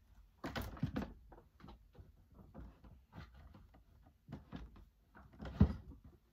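Objects being handled close by: a run of knocks, clicks and rustles, with a cluster about half a second in and the loudest thump about five and a half seconds in.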